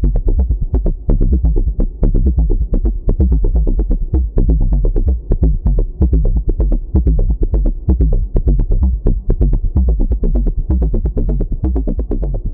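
Techno bassline played by the Serum software synthesizer from randomly generated MIDI riffs: a fast, even run of short, low notes, the pattern changing as new riffs are generated.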